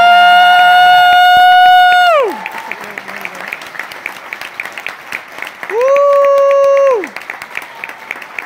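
Audience cheering at the end of a song: one long, steady 'woo' whoop close to the microphone for about two seconds, then applause, and a second, shorter whoop about six seconds in.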